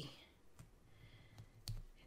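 Near quiet, with a few faint, light clicks as fingers handle a sticker on a paper planner page.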